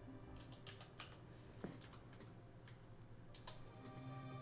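Faint, irregular keystrokes on a computer keyboard, a dozen or so scattered clicks as someone types a search, over a faint steady low hum.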